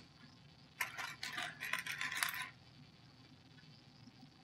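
Loose plastic LEGO pieces clicking and clattering against one another as hands rummage through a pile on a tabletop: a flurry of light clicks lasting about a second and a half, starting about a second in.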